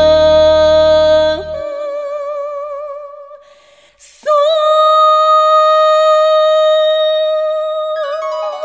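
Vietnamese folk-song music: a long held note with vibrato ends a song as the accompaniment stops about one and a half seconds in and fades out. After a brief near-silent gap about four seconds in, a new long, steady held note begins.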